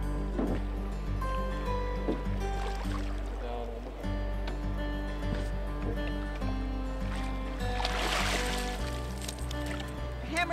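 Background music with sustained notes and a steady bass line, with a short rushing noise about eight seconds in.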